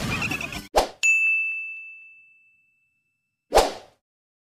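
A single bright bell ding about a second in, one clear high tone ringing out and fading over about a second and a half: a notification-bell sound effect. A short whoosh follows near the end.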